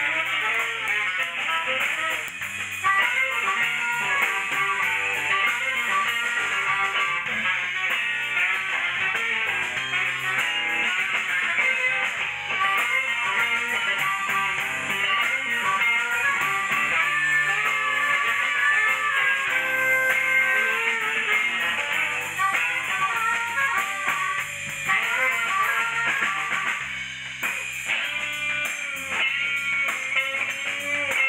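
Live band playing, with electric guitar to the fore.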